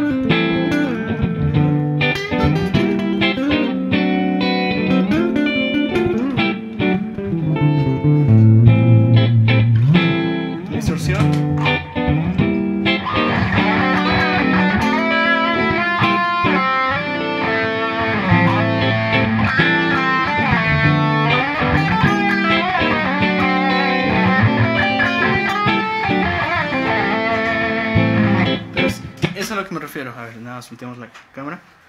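Electric guitar improvising a lead of quick single-note phrases over sustained low chords. About thirteen seconds in the sound turns brighter and fuller, and the playing fades out just before the end.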